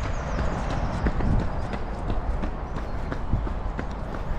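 A runner's footfalls on a tarmac park path, a steady rhythm of soft thuds, with wind rumbling on the microphone.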